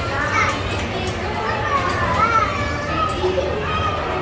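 Young children's voices chattering and calling out, high-pitched, over a steady background hubbub.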